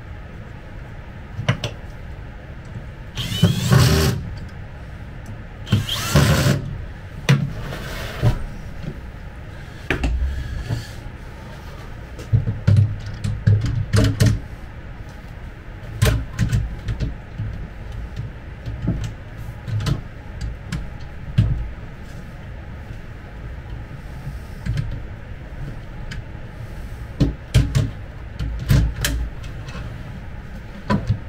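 Handling noise from a chipboard drawer pedestal being assembled: scattered knocks, clicks and scrapes of particleboard panels and metal drawer runners as a drawer is fitted into the cabinet, with two longer rasping bursts about three and six seconds in.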